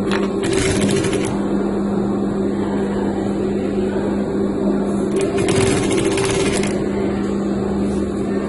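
Industrial lockstitch sewing machine with its motor humming steadily, stitching in two short runs: about half a second in, and again from about five and a half seconds in.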